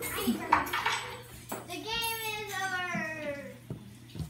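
A high voice drawing out one long wordless call that slides down in pitch for about two seconds, after a sharp knock about half a second in.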